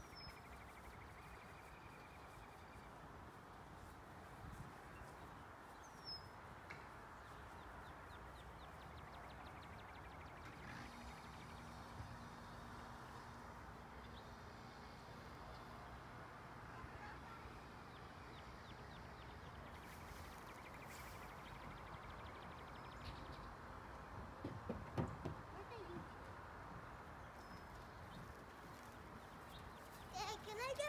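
Quiet outdoor ambience: a faint steady background hiss, with a faint low hum for a few seconds about a third of the way in and a few faint irregular sounds near the end.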